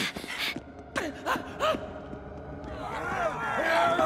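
A cartoon character's gasps and short breathy vocal noises, growing louder and denser in the last second or so.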